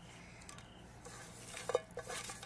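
Folded paper slips being stirred around by hand in a bowl: a soft rustling and scraping of paper and fingers against the bowl, faint at first and louder in the second half.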